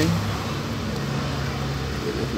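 A steady low hum of a motor running in the background.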